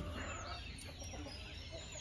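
Chickens clucking and calling, with a thin high note held for under a second near the middle.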